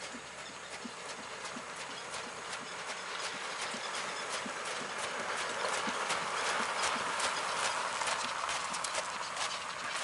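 Horse's hooves beating a steady rhythm on gravel arena footing while the carriage it pulls rolls along with a crunching hiss from its wheels. Both grow louder as the horse and carriage come close, loudest about two-thirds of the way in.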